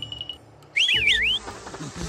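Cartoon whistle sound effect: a short high pulsing tone, then about a second in a loud whistle sliding quickly up and down several times, over a low musical bed.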